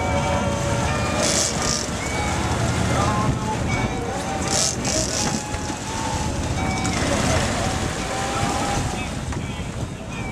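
Sportfishing boat's engines running with a steady low rumble as its propeller wash churns the water at the stern. Wind rushes over the microphone, with two short rushes of hiss near the start and about halfway through.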